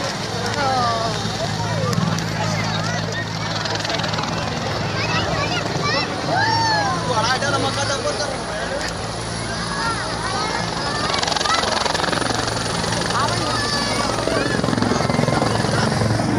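A helicopter's steady drone under the chatter and shouts of a large crowd of spectators.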